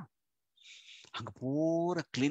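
A man's audible breath close to a headset microphone, followed by speech with one word drawn out on a single steady pitch.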